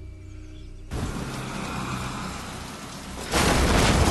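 Film soundtrack: quiet sustained music, then a sudden rushing noise cuts in about a second in and swells into a louder blast of noise near the end.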